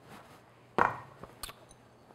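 Kitchen items handled on a countertop: a single dull knock a little under a second in, a few faint ticks, then one short sharp click.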